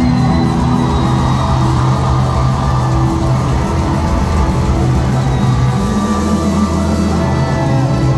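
Live rock band playing loud through a concert PA, electric guitars and bass holding sustained chords that change every second or two.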